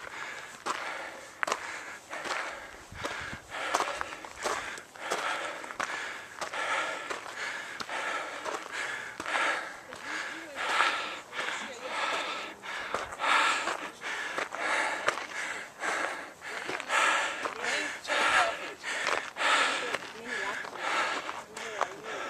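A hiker's hard, rapid breathing, about one breath a second, as he climbs the last steep steps to the summit: out of breath from the exertion of the climb.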